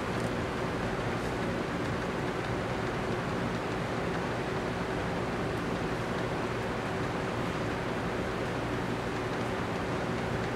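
Steady room tone: an even hiss with a faint low hum underneath, unchanging, with no distinct events.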